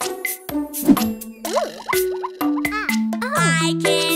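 Bouncy children's song music with held notes and short percussive hits, with sliding-pitch cartoon sounds and a child's voice in the second half.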